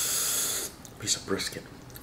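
About a second of breathy hiss of air through the mouth over hot pho, followed by a few short vocal sounds.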